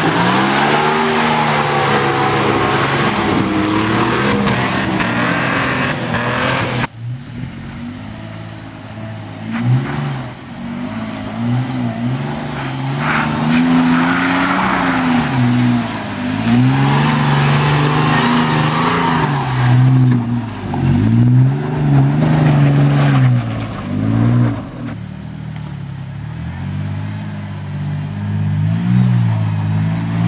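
Four-wheel-drive engines revving hard on a steep, rutted sand climb, with tyres spinning and throwing dirt. The sound changes abruptly about seven seconds in. After that a Toyota FJ Cruiser's V6 rises and falls in repeated surges as it works up the ruts.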